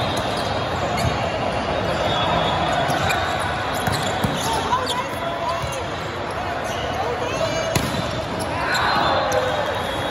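Volleyball rally in a large, echoing hall: the ball smacked by hands and arms several times, with a quick run of short shoe squeaks on the court late on, over a constant babble of players and spectators.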